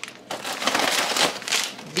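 Crinkling and rustling as plastic bags of shredded cheese are pulled out of a paper grocery bag and handled.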